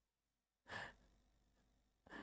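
Near silence, with one faint, short exhaled breath just under a second in.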